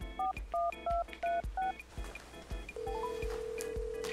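Phone keypad dialing tones: about seven quick two-tone beeps in under two seconds. Then a long steady tone begins near three seconds in, with a short run of rising beeps over its start.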